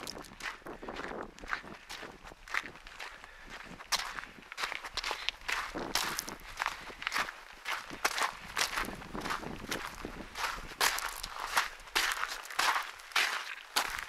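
Footsteps on a rocky gravel path with patches of snow, a steady run of short, uneven crunching steps.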